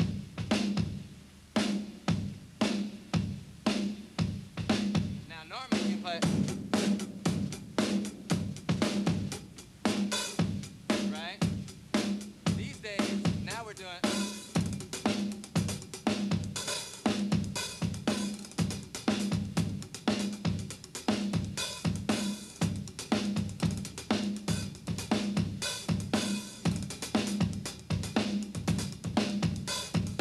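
Drum kit played solo in a funk groove: a solid, straight kick-and-snare pattern with busy hi-hat strokes dancing around it, in a dense, even stream of hits.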